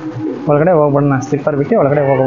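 A man speaking in an unbroken stretch of talk.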